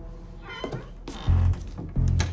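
A wooden door's hinge squeaks in two short creaks as it is pushed open, over orchestral score with low bass notes.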